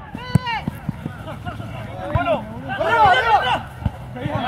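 Short shouted calls from people during a five-a-side style football game, loudest about three seconds in. A few sharp knocks are mixed in, the kind a ball being kicked makes.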